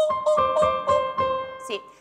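A woman singing one long, held high vowel as a vocal warm-up, over a grand piano striking the same high note again and again. Near the end a single spoken word breaks in.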